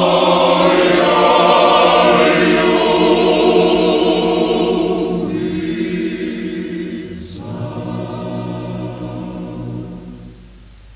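Male choir singing a traditional Slovenian song, from a 1957 recording. The singing is loud at first, then fades away over the second half.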